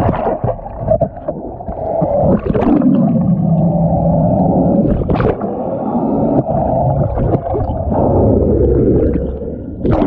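Muffled underwater rushing of water and bubbles against a submerged camera, with a low hum that slides down in pitch and then holds steady through the middle, and a few brief sharp splashing sounds.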